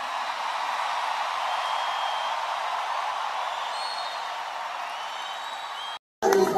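A large church congregation applauding: steady, even clapping that eases off slightly over a few seconds.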